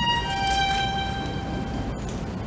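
Solo violin playing long bowed held notes: a high note gives way about a third of a second in to a slightly lower note, which is held until it stops just before the end.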